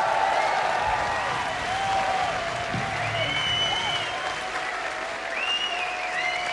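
Festival crowd applauding between songs of a rock band's live set, heard through an FM radio broadcast taped to cassette.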